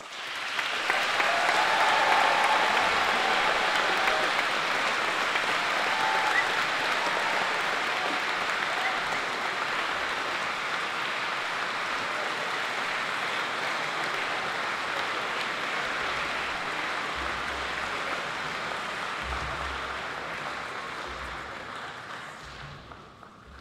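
Audience applauding, starting suddenly as the choral piece ends, loudest in the first few seconds and then slowly dying away.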